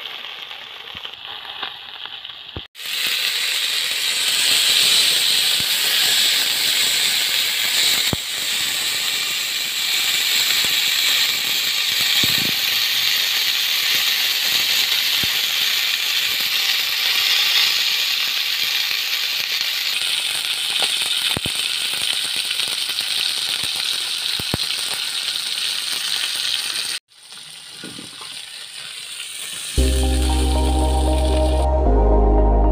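Snakehead fish sizzling as it fries in oil in a metal pan, a steady hiss that starts abruptly about three seconds in and cuts off near the end, with a few clicks of a metal spatula and spoon against the pan.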